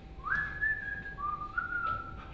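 Two long whistled notes. The first glides quickly up and is held, then tapers off. The second comes in lower just before the first ends, steps up and is held.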